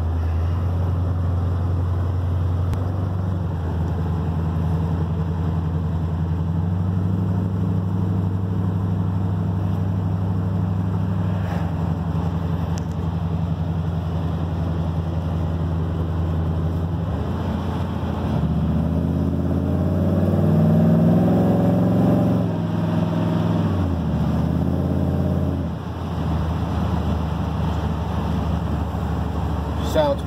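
Chevy/GMC dually pickup's engine and new exhaust heard from inside the cab while driving, running steadily with a few small changes in pitch. A little past the middle it pulls harder and rises in pitch for a few seconds, the loudest stretch, then eases off. The exhaust is tight and leak-free, with new headers and fiberglass-packed mufflers.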